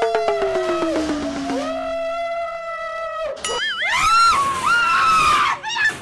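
A woman screaming in long, held cries, with a second, lower voice sliding slowly down beneath the first. A wavering scream follows about three and a half seconds in.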